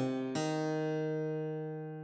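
Computer playback of a guitar tab arrangement at half speed. A short note sounds at the start, then a new note is struck about a third of a second in and held, as a tie across the bar, slowly fading over a steady low backing note.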